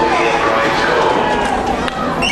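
Overlapping voices of a crowd with hurried footsteps on pavement, and a sharp click just before the end.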